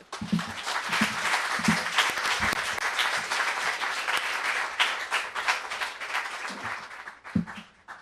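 Audience applauding, starting at once, holding steady for about seven seconds, then dying away near the end.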